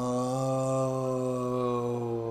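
A man humming one long, steady "mmm" on a single held pitch.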